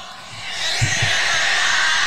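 Concert recording played from a smartphone held up to a studio microphone: a thin, dense wash of crowd noise through the phone's small speaker, growing louder about half a second in, with two low thumps of the phone knocking the mic a little under a second in.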